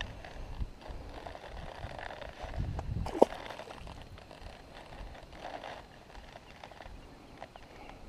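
Handling noise close to the microphone: soft rustling and irregular low knocks, with one sharp click about three seconds in.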